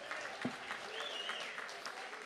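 Audience applauding: a steady spread of clapping from a crowd.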